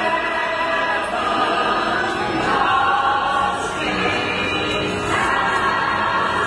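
A group of voices singing together in held, sustained notes over backing music, moving to new chords every second or so.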